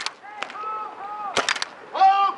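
Paintball markers firing: a single shot about half a second in, then a quick burst of about four shots about a second and a half in.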